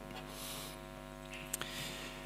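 Steady electrical mains hum from the sound system, with faint rustling and a single short click about one and a half seconds in.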